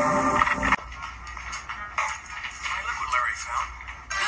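TV drama soundtrack played back through a television: loud score music ends abruptly on a sharp peak under a second in, and quieter voices follow.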